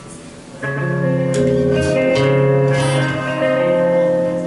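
A live band's guitars start playing about half a second in, strumming chords that ring on.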